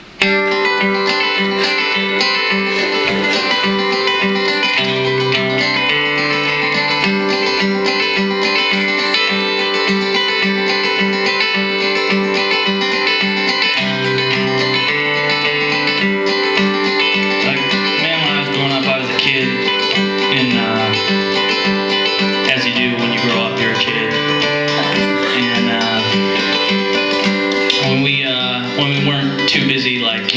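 Acoustic guitar strummed in a steady rhythm, playing repeated chords as an instrumental lead-in; it starts abruptly right at the beginning.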